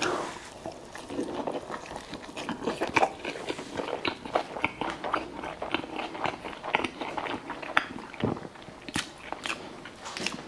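A man biting into and chewing a club sandwich with gyros, picked up close by a clip-on microphone: irregular wet clicks and soft crunches, several a second.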